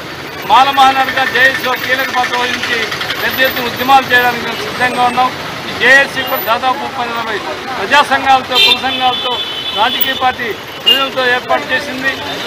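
A man speaking Telugu into a handheld microphone in a steady run of phrases with brief pauses.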